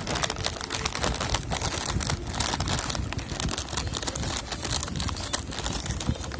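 Scissors cutting open a plastic snack packet, the packet crinkling and crackling continuously as the blades snip through it.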